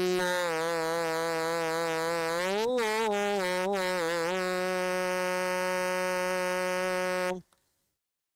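A single man's voice chanting a long, ornamented melodic line, its pitch bending and swelling. It then holds one steady note and cuts off suddenly a little past seven seconds in.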